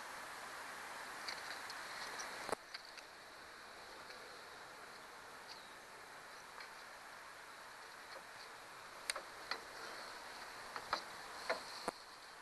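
Quiet handling of fishing gear: soft rustling and a few light clicks as a lure's hooks are worked free of a landing net's mesh. There is a sharper click about two and a half seconds in and several more near the end, over a faint steady hiss with faint high chirps.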